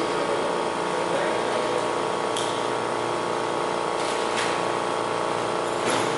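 A steady mechanical hum at a constant level, with a few faint short clicks partway through.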